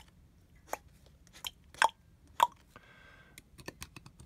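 Fountain pen nib scratching on card as a diagram is drawn: four short, sharp strokes, then a longer scratch about three seconds in, with a few light ticks near the end.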